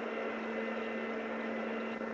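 A pause in the speech, leaving only the steady low hum and hiss of the call audio line.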